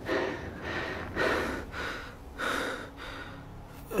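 A man's heavy, laboured breathing, four rasping breaths about a second and a quarter apart.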